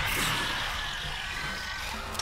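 A sound effect from a horror film's soundtrack: a sudden hissing burst that fades away slowly over about two seconds.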